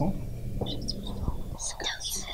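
Children's voices murmuring and whispering softly among themselves, over a low steady hum.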